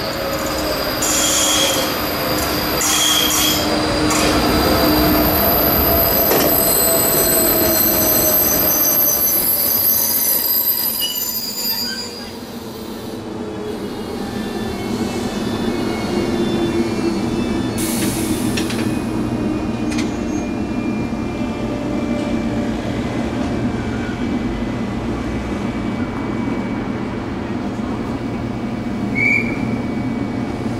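Electric passenger train with double-deck coaches pulling into the station, its brakes and wheels squealing in several high tones while a lower whine falls in pitch as it slows. About twelve seconds in it comes to a stand, and the waiting train's equipment hums steadily, with a short hiss a few seconds later.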